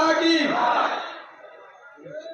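Crowd shouting a slogan together in unison, the long held shout fading out about a second and a half in and leaving scattered lower voices.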